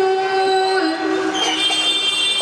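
A boy's voice through a microphone holding long drawn-out notes in melodic Quran recitation (tilawat). It steps down in pitch about a second in, then rises to a higher held note near the end.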